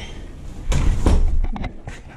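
A wooden door with a glass panel being pushed shut, closing with a thud about two-thirds of a second in, followed by about a second of low rumbling noise.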